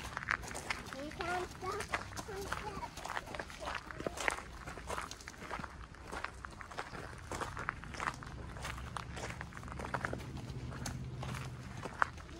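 Footsteps of several people walking on a gravel trail, a steady run of short crunching steps, with a brief faint voice about a second in.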